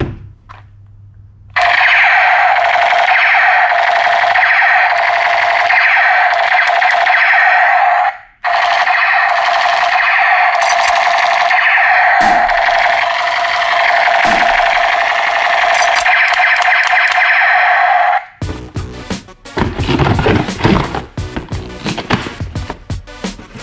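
Electronic toy rifle from an "electric music gun" set playing its built-in electronic music and shooting effects through its small speaker. The sound comes in two long, loud stretches with a short break about eight seconds in, and cuts off sharply near the end. A different rhythmic, clicking sound follows.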